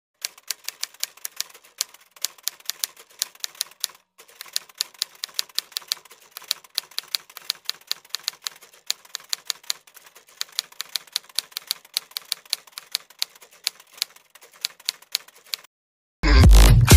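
Typewriter key clacks accompanying on-screen text being typed out, a quick run of about five strikes a second with a brief pause about four seconds in.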